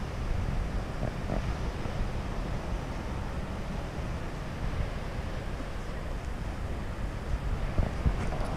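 Wind rumbling on the microphone: a steady noise with no distinct events.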